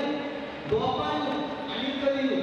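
A man's voice through a microphone in long, drawn-out phrases, with one sharp knock about three-quarters of a second in.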